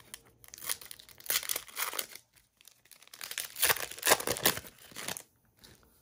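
A foil trading-card pack wrapper crinkling and tearing as it is opened by hand, in two crackly bouts of about two seconds each with a short pause between.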